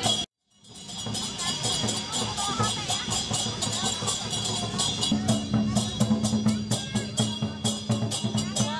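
Chinese lion-dance percussion: a drum and clashing cymbals in a fast, steady rhythm of about three clashes a second, over crowd chatter. The sound cuts out for a moment just after the start and fades back in.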